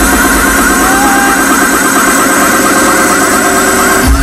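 Loud amplified electronic dance music from a DJ set: a buzzing synth line repeating rapidly at an even pace over a dense, sustained backing.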